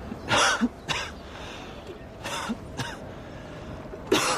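A woman coughing: four coughs in two pairs, one pair near the start and another about halfway through.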